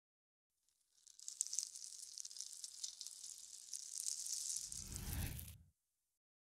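Channel logo intro sound effect: a high hiss full of small crackling clicks that builds over about four seconds, with a low rumble added near the end, then cuts off suddenly.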